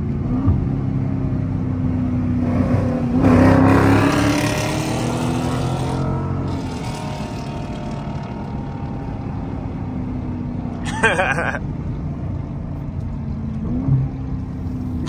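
Dodge Scat Pack's Hemi V8 heard from inside the cabin, accelerating hard about three seconds in with rising pitch and loudness, then easing back to a steady cruising drone.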